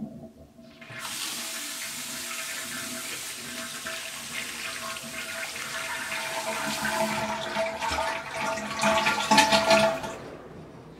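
Water rushing through bathroom plumbing, starting suddenly about a second in and growing louder toward the end, with a steady tone running through it.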